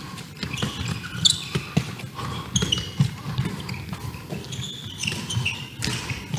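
Handballs bouncing, being caught and thrown on a sports hall floor: irregular thumps with brief squeaks of shoes, and one sharp, loud knock just before the end.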